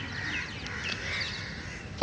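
Several faint, short bird calls over a steady background hiss.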